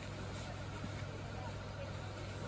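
Steady low mechanical hum with an even background haze and faint voices, no distinct events.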